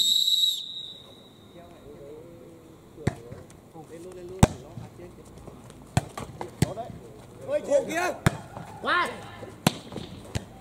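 Referee's whistle, one short blast at the very start, signalling the serve, followed by a volleyball rally: about six sharp slaps of hands and arms striking the ball a second or so apart, with players shouting near the end.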